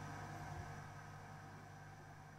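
Faint steady background noise with a low hum, slowly fading.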